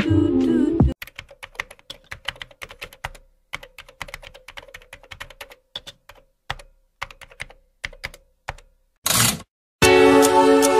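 Computer keyboard typing sound effect: irregular key clicks for about eight seconds, starting as a song cuts off about a second in. A short burst of noise comes just after nine seconds, and the music returns just before the end.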